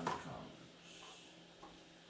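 Faint scrape and rustle of trading cards being handled and set into a card-sorting tray, about a second in, after the last spoken word.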